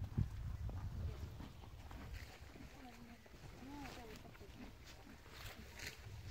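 Faint distant voice speaking over a low outdoor rumble, with a little rustling near the end.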